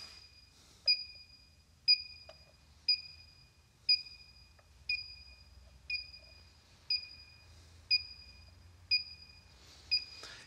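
Handheld electronic combustible-gas leak detector beeping at an even rate of about once a second, a short high beep each time, while its probe sniffs gas-train pipe joints. The rate does not speed up, so no leak is being picked up at these joints.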